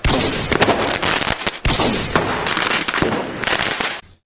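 A loud, dense run of crackling bangs and crashes that cuts in abruptly and stops just as suddenly about four seconds later.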